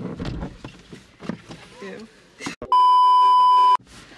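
A loud, steady electronic beep lasting about a second, starting and stopping abruptly near the end: a censor bleep laid over the audio. Before it there is rustling and a brief spoken 'Ew'.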